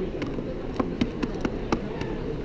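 A hand paint brayer rolled back and forth through wet acrylic paint on paper, making a sticky, buzzing rolling sound broken by several short, sharp clicks.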